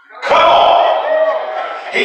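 A man's amplified voice singing long held notes through a microphone and PA system in a large room. It breaks off briefly at the start, then comes back in with a sharp, hard attack about a quarter second in.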